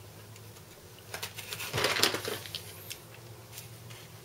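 Box cutter slicing through the packing tape and cardboard along the side of a shipping box: a short run of scratchy scrapes and clicks starting about a second in, loudest around the middle.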